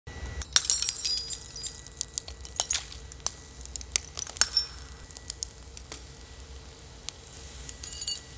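Stemmed drinking glasses shattering on a hard tabletop. A burst of breaking about half a second in is followed by scattered clinks and high pings of falling shards over the next several seconds.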